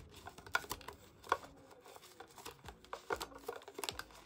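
Clear plastic cash envelopes in an acrylic box being thumbed through one by one: faint, irregular light clicks and rustles, the loudest click about a second in.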